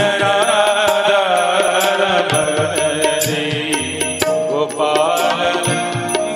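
Devotional bhajan: a man's voice singing with long, gliding held notes over an instrumental accompaniment of sustained tones and a steady pattern of light hand-percussion strikes.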